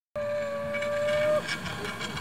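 Zipline trolley rolling along the steel cable: a steady high whine that cuts off about a second and a half in.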